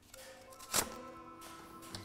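Godin Imperial acoustic guitar's open steel strings ringing faintly as it is handled, with a short tap about a second in, after which several strings keep sounding steadily.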